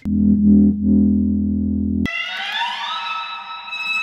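Electric guitar strings set vibrating by a neodymium-magnet pick held just off them, giving smooth sustained notes. A low note holds for about two seconds, then gives way suddenly to a higher note that slides up in pitch and holds.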